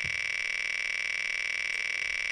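A steady electronic tone made of several held pitches, like a dial tone, running at an even level with no ticks or breaks.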